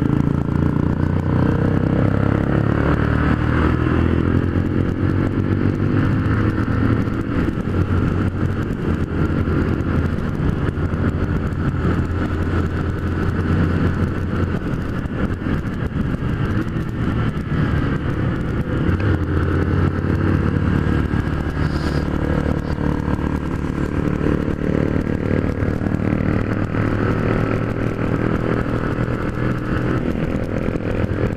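A Honda CG 150 Fan's single-cylinder four-stroke engine running under way, heard from on board the bike. Its pitch rises and falls with the throttle, over a steady rush of wind noise.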